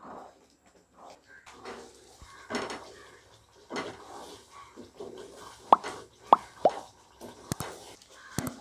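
Thick almond halwa paste bubbling in a nonstick pan while a wooden spatula stirs it, with soft scraping and a few short plops of bursting bubbles a little before six seconds in.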